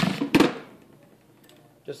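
Hammer blows on the steel shaft of a small vacuum-cleaner electric motor, one ringing at the very start and another about a third of a second in, driving the armature out of its housing.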